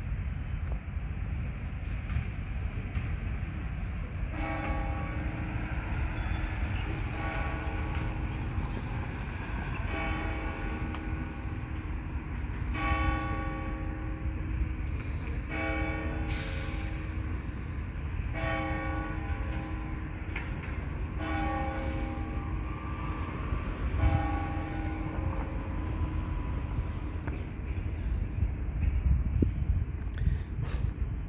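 A pitched, horn-like tone sounds in long notes of a second or two each, about nine times at intervals of roughly three seconds, from about four seconds in until near the end. A steady low rumble runs underneath.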